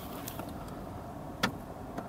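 Steady low hum inside a parked car's cabin, with one short click about one and a half seconds in.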